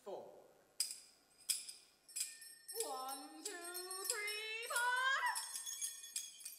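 Vocal music with tambourine-like jingle strikes. A voice slides down at the start, three sharp jingle strikes follow about two-thirds of a second apart, then a voice climbs in steps to a high note about five seconds in, with more jingles after.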